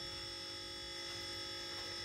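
Steady electrical hum with a thin, constant high whine over it: room tone between words.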